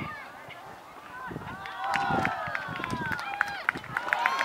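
Young players and sideline spectators shouting and calling across an open football pitch, with drawn-out calls falling in pitch, and a few sharp short taps in the second half.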